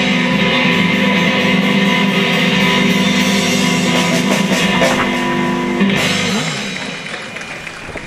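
Electric blues-rock trio playing live: electric guitar, bass guitar and drum kit together. About six seconds in the band stops and the last notes ring out and fade.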